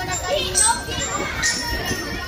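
Several children talking and calling out at once, a babble of young voices with no music.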